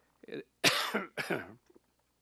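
A man coughing twice into a lectern microphone, the first cough the loudest; he is getting over a cold.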